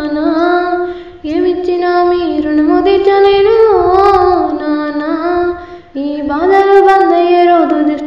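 A high solo voice singing a Telangana folk song with no instruments, in long, ornamented phrases that break briefly about a second in and again near six seconds.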